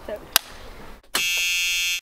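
A single sharp clapperboard clap about a third of a second in, then a loud, steady buzzer-like electronic beep with many overtones that starts a little past one second and cuts off abruptly at a video cut.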